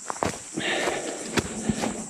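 Footsteps on dry leaf litter and bark, a series of irregular short scuffs, against a steady high insect drone.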